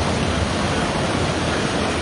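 Heavy surf breaking and washing over stones and rubble at the shoreline: a steady rushing of water with a low rumble underneath.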